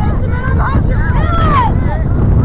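Wind rumbling on the microphone, with a string of short calls over it that arch up and down in pitch; the longest, about one and a half seconds in, slides downward.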